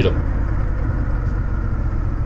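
Honda Rebel 1100's parallel-twin engine running steadily while the bike cruises, heard from on board as an even low rumble with road noise.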